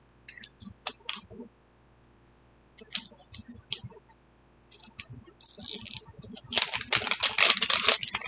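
Shiny plastic wrapping being picked and peeled off a Mini Brands surprise ball: scattered clicks and crackles, then a dense burst of crinkling in the last second and a half.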